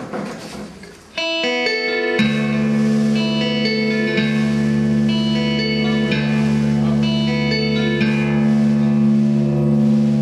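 Post-rock song beginning on electric guitar through effects. Repeated picked notes come in about a second in. About two seconds in a sustained low droning chord joins and holds under them.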